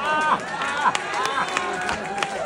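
Audience laughing, many voices overlapping in short bursts, with a few scattered claps.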